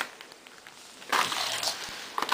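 Shiny foil packaging crinkling and rustling as it is pulled open by hand, starting about a second in.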